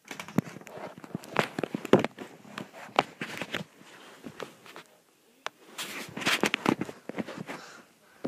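Handling noise from a handheld camera being moved about: irregular knocks, rubs and rustling against fabric and hands, louder about six seconds in.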